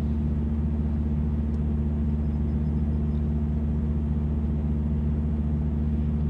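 Steady low hum of an idling car engine heard from inside the cabin, unchanging throughout.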